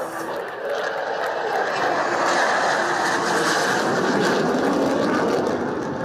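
Jet noise of an F-16 fighter flying past during a display, swelling over the first two seconds and then holding loud and steady.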